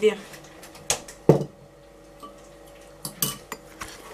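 A handful of separate clinks and knocks of a tea mug and other kitchenware being handled on a counter, the loudest a little over a second in and a few more smaller ones about three seconds in.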